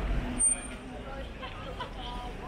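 Busy city street at night: scattered voices of passers-by over a low traffic rumble. About half a second in there is a brief, sharp, high-pitched squeal.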